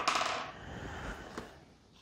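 Plastic art markers being handled: a brief clinking rattle at the start, then faint rustling and a single small click.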